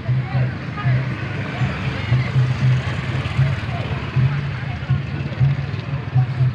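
Outdoor street procession: a low, rhythmic beat about two to three times a second under the voices of a crowd, with motorbikes on the road.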